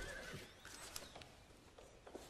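Near silence: faint room tone with a few soft, scattered ticks.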